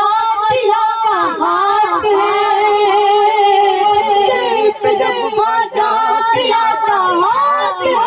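A boy reciting a naat, singing into a microphone in an ornamented, melismatic style, with long held notes that bend and waver, carried over a sound system.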